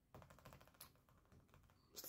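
Faint, quick clicks of fingertips tapping and shifting on a closed laptop lid, a quick run in the first second and a few more about a second and a half in.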